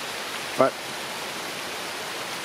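Steady rain falling, an even hiss with no let-up.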